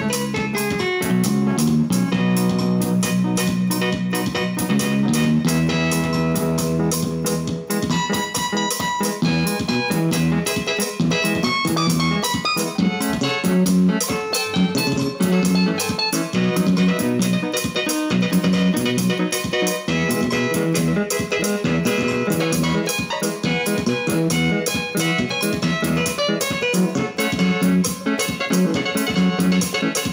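Electronic arranger keyboard played with both hands over its auto-accompaniment style, a steady drum beat and bass line under the melody. The bass holds long low notes for the first few seconds, then moves more busily from about seven seconds in.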